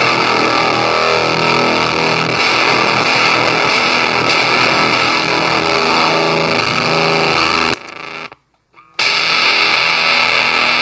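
Electric guitar played through the Rosewater fuzz pedal with both its thick fuzz and its feedback loop engaged, giving a dense, sustained, distorted sound. About eight seconds in the sound cuts out for about a second, then comes back loud with the feedback loop switched off, leaving the fuzz alone.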